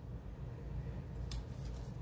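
Faint handling of paper stickers: a sticker being peeled from its backing and pressed onto a planner page, with two small crackles about one and a half seconds in, over a steady low room hum.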